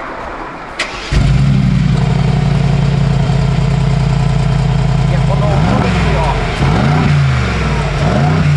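Mercedes-AMG G63's twin-turbo V8 started up: it catches about a second in with a sudden loud burst and settles into a steady, powerful idle through the side exhausts.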